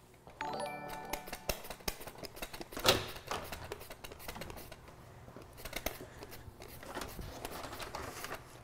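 A short chime of several steady notes about half a second in, then a run of irregular sharp scraping strokes as a sweet potato is sliced on a handheld mandoline, the loudest stroke about three seconds in.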